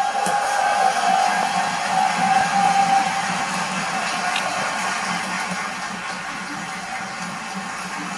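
Orchestra playing softly, a held mid-range note fading out about three seconds in.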